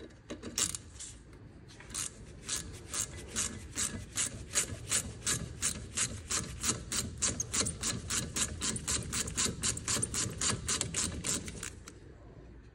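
Hand ratchet and socket turning a front brake caliper bolt, the pawl clicking in a quick, even run of about four or five clicks a second from about two seconds in until near the end.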